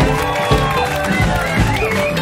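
Live band music: drums and bass keep a steady beat of about two hits a second under a lead line that slides up and down in pitch.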